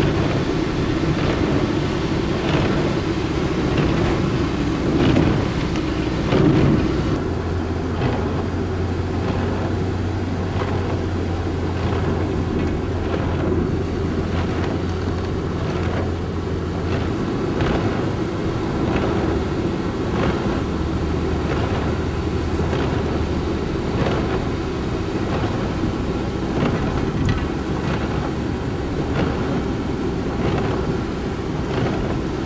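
Steady engine and tyre noise heard from inside a car driving on a wet road in rain, with a low hum that comes and goes.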